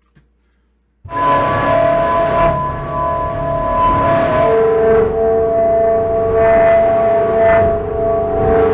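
Omnisphere 'Fire Hose' patch, a dark, distorted drone built from vintage film and TV recordings, played as loud held notes over a noisy bed. It starts about a second in after a short silence, and a lower held note joins about halfway through.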